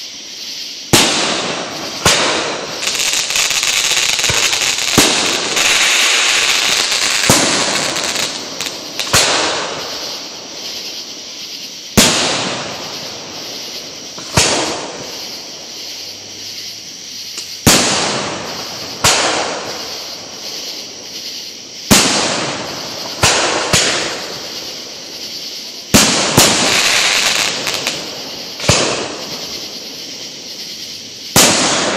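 Aerial fireworks shells bursting: sharp loud bangs every one to three seconds, each trailing off in a rolling echo, with a sustained hiss in the gaps for several seconds early on and again near the end.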